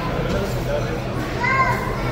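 Children's voices in a large indoor hall, with one child's high-pitched call about one and a half seconds in, over a steady low hum.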